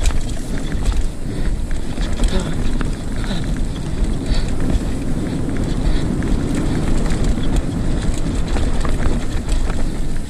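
Hardtail mountain bike ridden fast down a dirt singletrack: wind on the microphone and tyre rumble make a loud, steady roar, with frequent small clicks and rattles from the bike.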